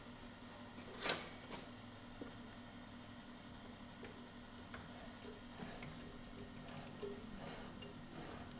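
Photographic enlarger humming faintly and steadily with its lamp on, with two sharp clicks about a second in and a few faint ticks later as its head is handled and adjusted.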